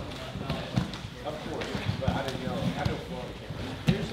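Thumps and knocks of bodies, hands and feet against a grappling mat as two men roll, the sharpest thump just before the end, under indistinct voices talking in the gym.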